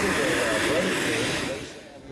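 Steady hiss of a model jet's turbine engine with indistinct voices mixed in; the sound drops away near the end.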